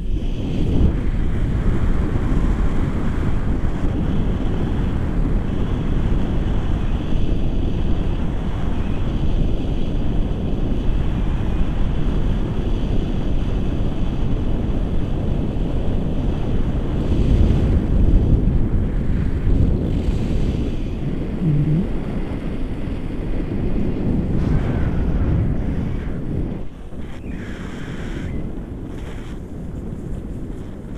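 Wind from a paraglider's flight rushing over an action camera's microphone: loud, gusting noise that rises and falls, easing somewhat near the end.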